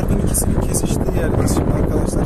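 Wind rushing over the microphone inside a moving car, over a steady low rumble of road and engine noise.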